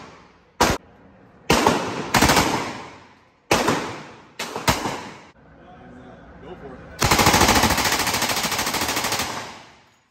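Thompson submachine gun firing full-auto in an indoor range: a few short bursts in the first five seconds, then one long burst of about two seconds starting about seven seconds in, each followed by the range's echo.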